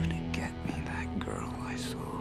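Trailer score: a low steady drone under wavering, gliding high tones and breathy, whisper-like voice sounds without words.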